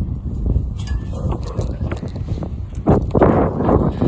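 Wind buffeting a phone microphone as a steady low rumble, with a louder burst of rumbling noise starting about three seconds in.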